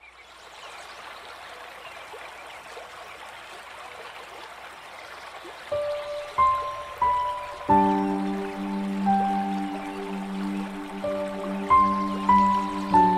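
Steady soft rushing noise for several seconds, then the instrumental introduction of a song begins about six seconds in. It opens with single melody notes, and sustained low chords join a couple of seconds later.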